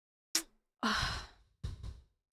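A woman's long sigh into a close microphone, preceded by a short mouth click and followed by a shorter breath.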